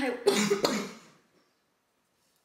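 A woman coughing: one short, harsh burst about a quarter of a second in that trails off within a second.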